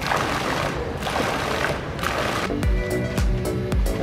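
Water jets of an indoor fountain splashing into a shallow pool. About two and a half seconds in, background music with a steady beat comes in.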